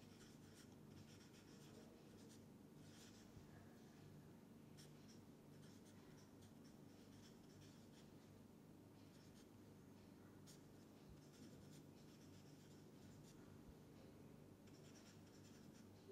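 Felt-tip permanent marker writing on paper: faint scratches and squeaks of pen strokes in short runs with pauses between, over a low steady hum.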